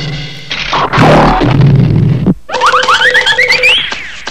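Cartoon sound effects as the giant hourglass is turned over: a rough, noisy clatter, then a quick run of short rising boing-like tones that climb higher step by step.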